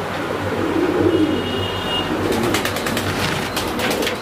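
Fantail pigeons cooing in a loft, low wavering coos in the first second or so. In the second half comes a quick run of sharp clicks.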